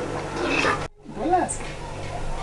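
A person's voice: speech-like sounds, then the sound drops out briefly before the middle, followed by a drawn-out vocal exclamation whose pitch rises and falls.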